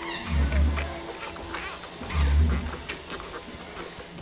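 A nursing French bulldog's low snoring breaths: a deep rumble about every two seconds, each lasting around half a second.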